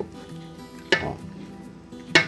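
A wooden spoon stirs strips of pomelo peel in water in an aluminium pot, with one sharp knock against the pot about halfway through. Soft background music with steady held tones plays underneath.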